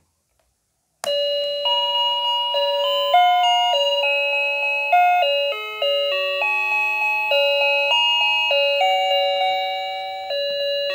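Electronic jingle from a toy ice cream stand's built-in sound chip: a simple tinny melody of single beeping notes that starts suddenly about a second in and is still playing at the end.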